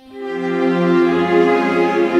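Background music: sustained chords that swell in just after the start and hold.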